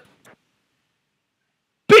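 Silence: the sound drops out completely for over a second, between the tail of a man's voice at the start and another voice starting just before the end.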